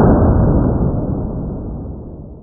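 A .45 pistol shot slowed down with slow-motion footage: a sudden deep, dull boom that fades away slowly over a couple of seconds, with no sharp crack on top.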